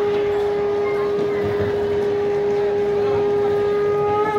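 Conch shell (shankha) blown in one long, steady note at the puja part of the ceremony.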